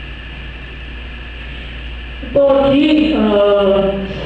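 Steady hum and hiss of the hall's sound system, then, a little over two seconds in, a voice comes in loudly through the loudspeakers, drawn out in long held tones.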